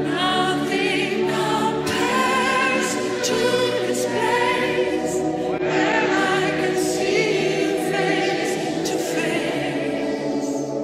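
Worship song: choir-like voices singing long notes with vibrato over sustained held chords.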